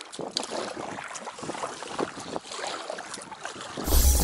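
Oars of a small inflatable rowboat dipping and splashing irregularly in lake water as it is rowed, with wind on the microphone. A loud low hum starts suddenly right at the end.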